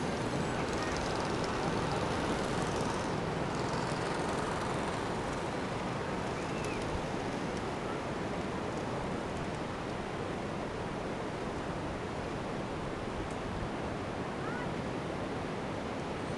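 Steady noise of ocean surf breaking on a beach, with wind on the microphone.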